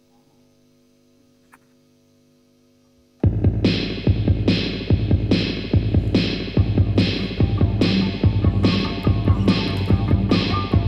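Faint steady hum, then about three seconds in a live rock band comes in loud, bass guitar and guitars hitting a heavy, throbbing pulse about every 0.6 seconds.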